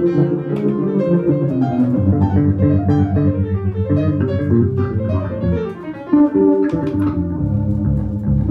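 Live instrumental improvisation led by electric bass guitar, with plucked low notes repeated quickly for a stretch in the middle, and piano. The music thins briefly and then comes back with a sudden loud accent about six seconds in.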